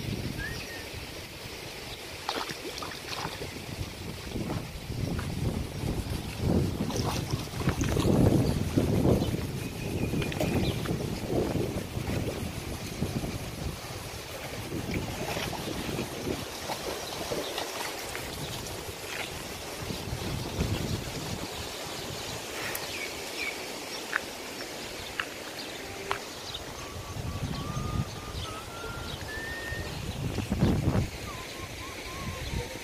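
Wind buffeting a phone microphone outdoors, in uneven low gusts that are strongest in the first half, over a steady hiss. A few short high chirps come near the end.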